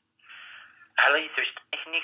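A call-centre agent's voice over a telephone line, with the narrow, thin sound of a phone call. It starts about a second in, after a brief hiss on the line.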